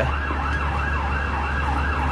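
Emergency vehicle siren in a fast yelp, its pitch swinging up and down about three times a second.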